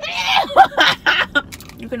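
People laughing in a run of short, breathy bursts of giggling.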